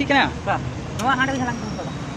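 A voice speaking in short phrases over a faint steady hum, with one sharp click about a second in.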